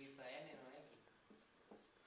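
Quiet strokes of a marker writing on a whiteboard, with a faint low voice during the first second.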